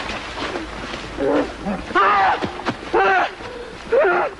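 A wounded man crying out in pain: soft moans at first, then two loud wailing cries about a second apart in the second half.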